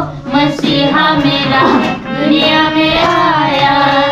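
A group of voices, women and children among them, singing a Christmas carol to a harmonium and a dholak hand drum.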